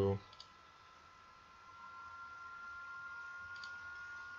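Two faint computer mouse clicks, one about half a second in and one near the end, over a faint steady high-pitched hum.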